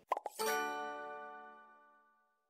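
Outro logo sound effect: a few quick pops, then a bright chime that rings and fades away over about a second and a half.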